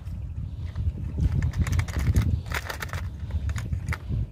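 Light clicks and rattles of fishing rigs being handled in a clear plastic compartment box, in a few short clusters, over a steady low rumble.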